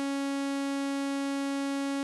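XSRDO Doppler Modular System software synthesizer, its M152 oscillator holding one steady, bright note rich in overtones, unchanging in pitch.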